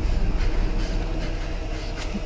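A steady low rumble with faint scattered clicks and rattles: a film soundtrack's tense ambience under a dark scene in a ship's pipe-lined corridor.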